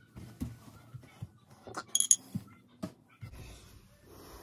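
Handling and movement noises: scattered knocks and rustles, with a sharp ringing clink about two seconds in.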